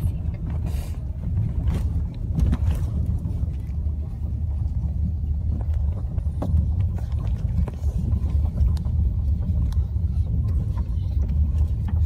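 Car driving on a gravel rock road, heard from inside the cabin: a steady low rumble of engine and tyres, with a few scattered small knocks.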